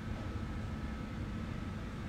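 Steady background hum and hiss of the airport terminal interior, with a faint constant high whine running through it.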